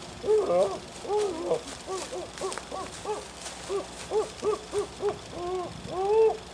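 A voice giving a rapid series of short hooting calls, each rising and falling in pitch, about three a second, with the calls longer near the start and end.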